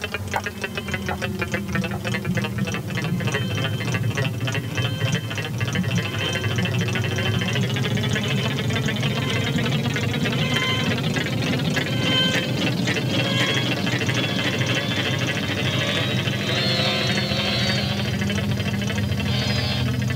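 Experimental analog electronic music made on self-built instruments: a steady low drone under rapid ticking pulses. Higher held tones enter around the middle, and a rising tone climbs near the end.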